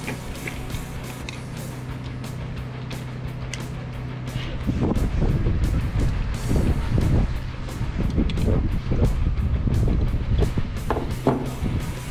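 Cartridges clicking one after another as they are thumbed into a pistol magazine, over a steady low hum. About five seconds in, a louder, uneven low rumble of wind on the microphone sets in.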